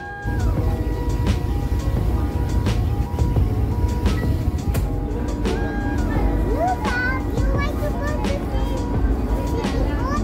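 Background music over the steady low rumble of a passenger ferry's engine, with a few voices in the mix.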